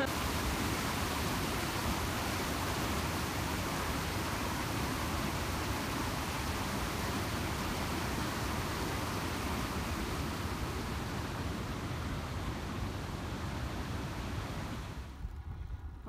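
Fast river rapids below a waterfall, swollen with spring snowmelt: a steady, full rushing of white water that drops away near the end.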